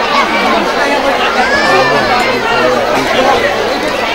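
Many people talking at once: a steady, loud chatter of overlapping voices, with no single clear speaker.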